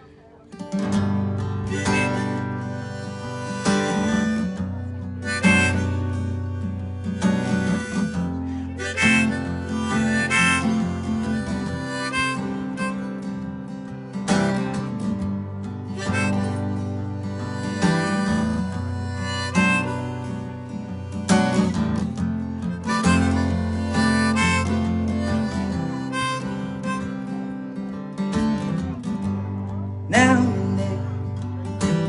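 Harmonica in a neck rack playing a melody over a strummed acoustic guitar, the instrumental intro of a song, beginning about a second in after a brief pause.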